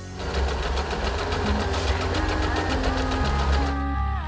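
Usha Janome Wonder Stitch electric sewing machine running and stitching at a fast, even rhythm with a low motor hum, stopping just before the end.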